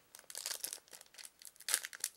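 Foil Yu-Gi-Oh booster pack wrapper crinkling and being torn open: a run of irregular crackles, the loudest a little before the end.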